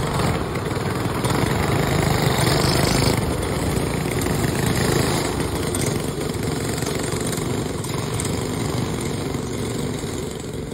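Several dirt-track racing go-karts' small engines running hard together as the pack goes by, loudest from about one to five seconds in and then fading slightly as the karts move away.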